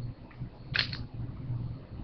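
Brief rustling scrape of trading cards in plastic holders being handled and set aside, about a second in, over a faint low hum.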